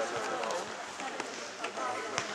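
Several people chattering in an indoor sports hall, voices overlapping, with a few short knocks scattered through.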